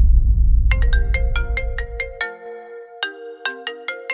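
A mobile phone ringtone starts up about a second in: a quick melody of bright, chiming notes that keeps ringing. Under its start, a deep rumble dies away and ends about two seconds in.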